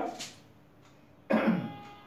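A man coughs once, a sudden short burst about a second and a half in.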